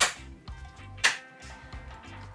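Two sharp hand slaps about a second apart: a mint sprig clapped between the palms to release its aroma for a cocktail garnish, over background music.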